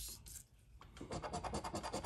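A coin scratching the coating off a scratch-off lottery ticket in rapid back-and-forth strokes, starting about halfway in after a brief lull.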